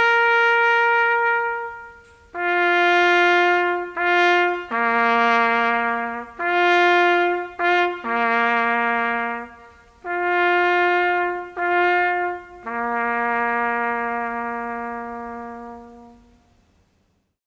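Solo trumpet playing a slow ceremonial funeral call: long, separate held notes with short breaks between them. It closes on a long, held low note that fades away.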